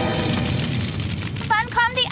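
Cartoon sound effect of a bonfire blazing: a sudden burst of rushing fire noise that carries on with crackling. Voices break in about one and a half seconds in.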